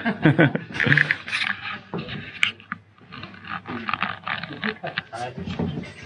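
People talking: speech only.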